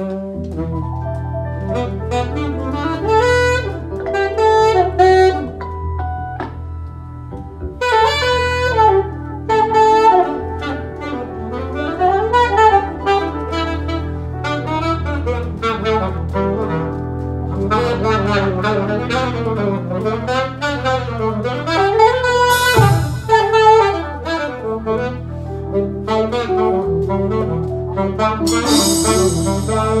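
A live jazz band playing, with an alto saxophone taking the melodic lead over electric bass and keyboards. Bright cymbal-like splashes come about 23 seconds in and again near the end.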